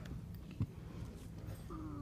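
A low steady hum in the hall with one sharp knock just over half a second in, then a short whining vocal sound near the end.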